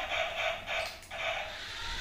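Small electric motor of a remote-control toy car whirring as it drives, cutting out briefly about halfway.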